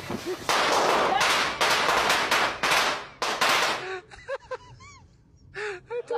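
A rapid series of loud, harsh crackling bursts lasting about three and a half seconds, followed by a person laughing.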